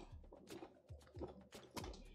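Faint crisp clicks and crackles of a dry whole-wheat cracker being handled and bitten, a few sharp ticks spread through the moment.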